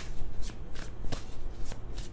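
A tarot deck being shuffled by hand: a run of quick, irregular papery card snaps and rustles.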